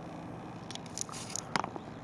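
Handling noise on a hand-held camera: a cluster of short clicks and crackles starting a little under a second in, with one sharper click near the middle, over a steady faint hiss.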